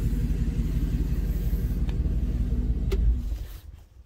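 Dodge A108 van's engine idling with a steady low exhaust rumble, not loud, then shutting off about three seconds in, the sound dying away within about half a second.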